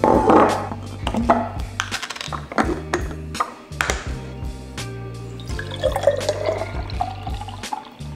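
Background music over sharp knocks of a glass milk jug, a glass baby bottle and its nipple cap being handled and set down on a stone countertop. From about two-thirds of the way in, milk is poured from the jug into the baby bottle, with a pitch that rises as the bottle fills.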